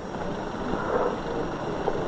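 Faint, steady hiss and low rumble of an old film soundtrack in a lull between music cues.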